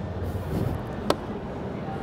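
Steady low background noise of a large hall, with one sharp click about a second in.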